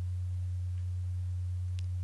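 Steady low electrical hum in the recording, a single unchanging low tone, with a faint click near the end.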